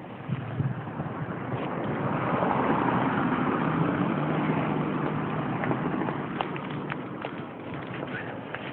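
A car driving past on the street. Its engine and tyre noise swells over a couple of seconds, holds with a low hum, then fades away.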